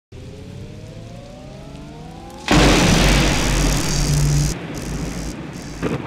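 Logo sting sound design: a slowly rising tone for about two and a half seconds, then a sudden loud thunderclap crash that rumbles on and eases off near the end.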